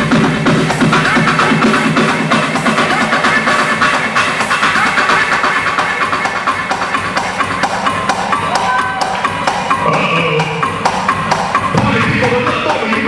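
Club dance music from a DJ mix, played loud over a nightclub sound system, with a steady, driving drum beat.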